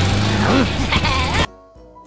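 Cartoon ride-on mower engine running with a steady low hum, under a wavering cartoon voice and music. It all cuts off suddenly about one and a half seconds in, leaving soft music.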